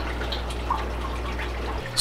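Aquarium water trickling with small drips, over a steady low hum from the tank's equipment that cuts off near the end.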